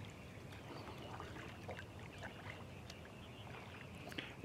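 Faint splashes and drips of a kayak paddle dipping into calm water as the kayak is paddled slowly.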